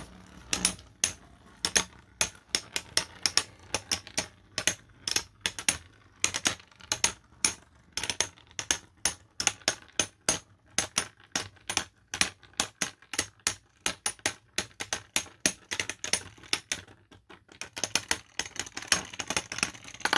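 Two 3D-printed plastic Beyblade spinning tops clashing again and again in a plastic stadium: an irregular run of sharp clicks and knocks, several a second, growing into a dense flurry near the end.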